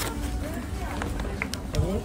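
Wind buffeting the phone's microphone as a steady low rumble, with short fragments of voices over it.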